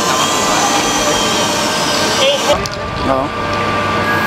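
A steady mechanical whirring hum with several steady tones in it, easing a little over halfway through, with short voices calling out.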